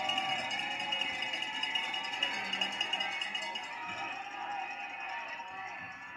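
Music with a voice over it, coming from a television football broadcast and heard through the set's speaker.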